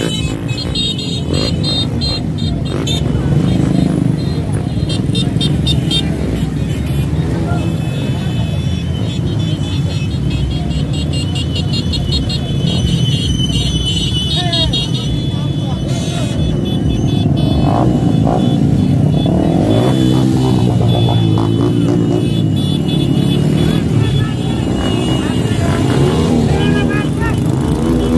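Engines of a slow-moving convoy of small motorcycles and scooters running past, mixed with crowd voices and music.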